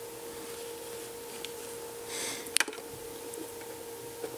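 Handling noise at a workbench: a soft rustle followed by a single sharp click a little past halfway, over a steady low hum.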